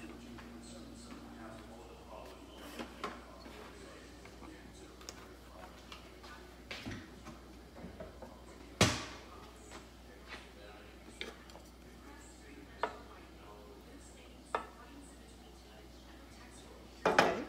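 Quiet kitchen with scattered knocks and clinks from handling kitchenware. The loudest is a single sharp knock with a short ring a little past halfway.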